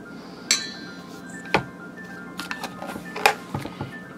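A metal spoon clinking against a stainless steel mixing bowl while sour cream is knocked off it into the chicken: several separate clinks, the first about half a second in leaving a short metallic ring.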